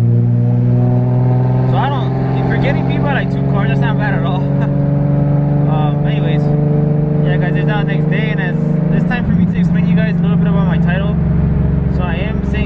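Turbocharged Nissan 350Z V6 heard from inside the cabin while driving, its engine note climbing slowly as the car gathers speed and changing about nine seconds in.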